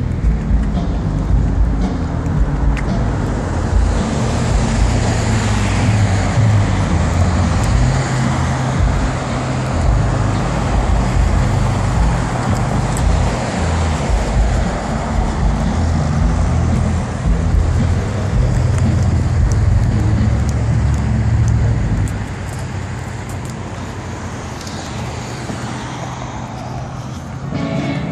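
Road traffic on a multi-lane boulevard: cars passing with a continuous rush of tyre and engine noise and a heavy low rumble, swelling and fading as vehicles go by, and easing off about 22 seconds in.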